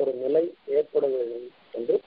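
A man's voice chanting Sanskrit verses in slow, drawn-out syllables with short pauses between phrases.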